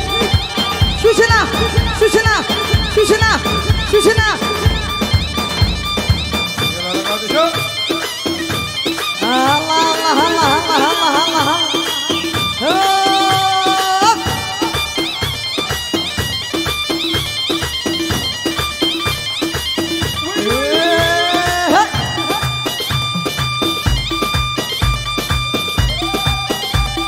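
Assyrian dance music led by a wailing wind-instrument melody over a regular drum beat. The deep bass beat drops away after about six seconds and returns strongly near the end.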